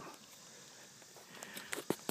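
Faint background with a few small clicks and knocks near the end, from hands handling a bass and a hand-held fish scale being clipped on for weighing.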